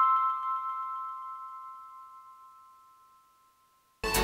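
The last chime-like note of a background music track rings on and fades away to silence about three seconds in.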